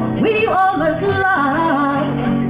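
A woman singing into a microphone and playing an acoustic guitar. Her voice slides up into notes that she holds, over steady guitar.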